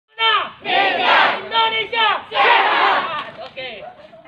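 A group of schoolchildren shouting together in unison, a loud chant in several short bursts that fades out toward the end.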